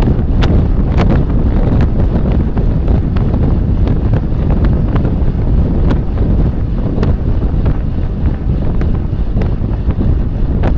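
Wind buffeting a bike-mounted camera's microphone at racing speed: a loud, steady low roar, broken by scattered sharp ticks.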